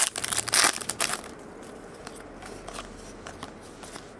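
Foil wrapper of a Chrome baseball card pack being torn open and crinkled by hand. The crackling is loudest in the first second, then goes on as fainter rustling while the cards are pulled out.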